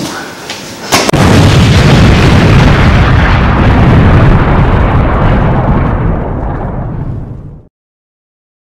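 Explosion sound effect: a sharp blast about a second in, then a long, loud, deep rumble that slowly dies down and cuts off abruptly near the end.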